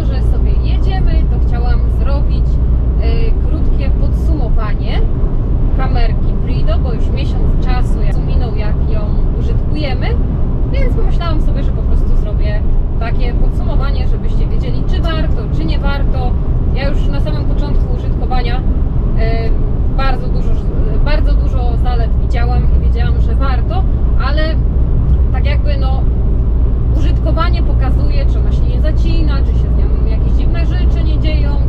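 A woman talking over the steady low rumble of a truck's engine and tyres heard inside the cab while driving.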